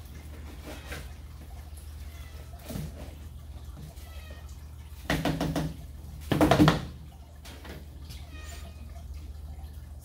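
A plastic cat litter box being scooped and tipped over a bag-lined trash can, with two louder bursts about five and six and a half seconds in as litter clumps are knocked out into the bag. A caged cat meows.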